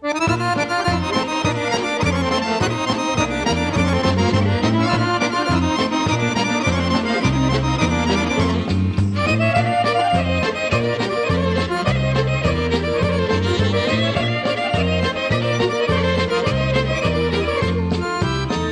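A Serbian folk ensemble plays a lively instrumental introduction led by accordions, with violins in the band. It starts sharply at the beginning and breaks off briefly about nine seconds in.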